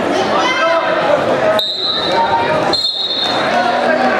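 Crowd in a gym shouting and cheering during a wrestling bout, with two short, steady, high whistle blasts from the referee about halfway through, stopping the action.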